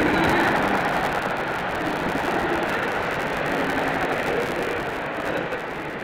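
Audience applauding in a hall. The applause starts suddenly and slowly dies down.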